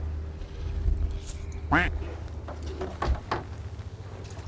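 A freshly caught cuttlefish squirting ink in several short, sharp spurts in the second half. A rising vocal exclamation comes nearly two seconds in. Under both runs the steady low hum of the boat's engine.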